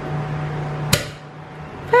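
Cork popping out of a bottle of sparkling wine (champanhe) that is warm and under pressure: one sharp pop about a second in.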